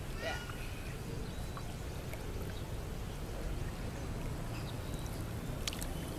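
Swimming-pool water lapping and trickling around a person standing in it, with a few small splashes near the end.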